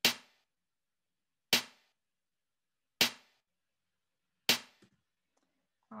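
Snare drum struck four times, evenly, one hit every second and a half, each with a short decay. The snare is an object played back through the Dolby Atmos binaural renderer at the mid distance setting, the default, meant to sound about as far away as a loudspeaker.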